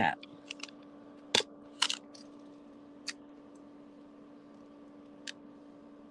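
Scattered short, sharp clicks and taps of round-nose jewelry pliers and plastic letter beads being handled on a tabletop, the loudest about a second and a half in and again just before two seconds, with a steady low hum underneath.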